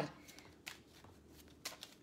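A small deck of angel oracle cards being shuffled by hand: faint rustling of card on card, with a few sharp card clicks, the two clearest about a second apart.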